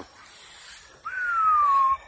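A single whistle, about a second long, that slides slowly down in pitch and stops abruptly.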